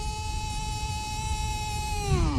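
Football radio commentator's drawn-out goal cry: one long shout held on a steady high pitch, which begins to slide down at the very end.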